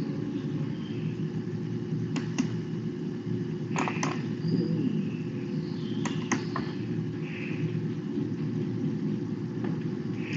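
Steady low background hum and rumble picked up by an open voice-chat microphone. A few sharp clicks come in pairs about two, four and six seconds in, with one more near the end.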